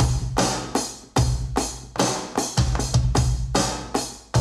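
Music: a programmed drum-machine beat, sharp repeating hits over a deep bass.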